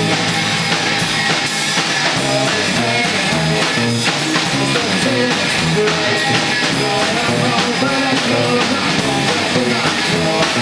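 Live rock band playing at full volume: distorted electric guitar, bass and drum kit, recorded from the room.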